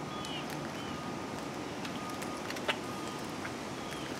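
Footsteps of a Tomb Guard sentinel's shoes on the marble plaza as he walks his post, heard as scattered sharp clicks, the loudest a little under three seconds in, over a steady outdoor hum.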